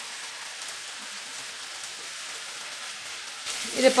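Chicken pieces frying in hot oil in a nonstick pan, a steady sizzle. A voice starts just before the end.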